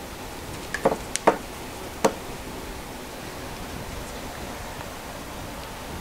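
A handful of light knocks and taps in the first two seconds as a folded paper towel is pushed under the edge of a canvas to prop it up, then only a steady faint hiss.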